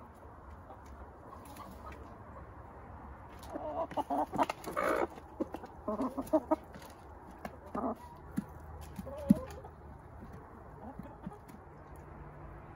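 Domestic chickens clucking in short bursts, busiest about four to five seconds in and again around six, with one sharp tap near the end.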